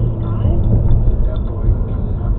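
Low rumble of the car's engine and tyres inside the cabin while driving slowly, with a radio voice faintly over it.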